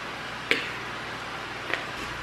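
A fork mashing bananas in a mixing bowl, with a sharp tap of the fork against the bowl about half a second in and a lighter one near the end.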